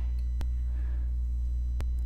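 Steady low electrical hum, mains hum in the recording chain, with two faint clicks.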